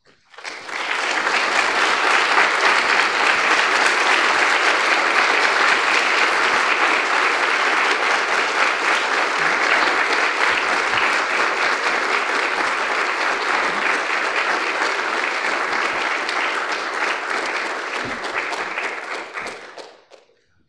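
Lecture-hall audience applauding: sustained clapping that builds within the first second, holds steady, and fades away just before the end.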